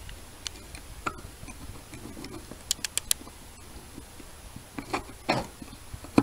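Light, scattered clicks and small taps of a hand caliper being handled, its depth rod slid down into a seal bore in a plastic housing, with a quick run of three sharp ticks around the middle.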